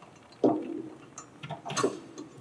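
A few light clicks and knocks from a long screw and a speaker mounting bracket being handled as the screw is pushed through the bracket's hole.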